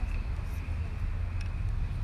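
A clip-on microphone being adjusted at the collar, with a few faint clicks about one and a half seconds in, over a steady low background rumble.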